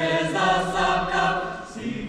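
Mixed choir singing a cappella: a phrase that swells in the first second and tapers off near the end.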